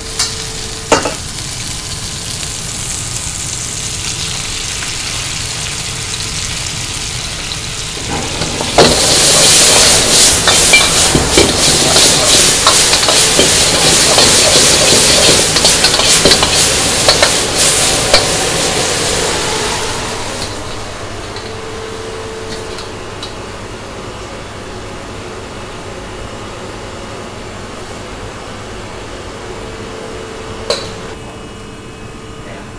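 Shrimp frying in a hot wok, with a metal ladle scraping and clicking against the pan as it stirs. The sizzle turns loud about nine seconds in and eases after about twenty seconds to a quieter steady hiss.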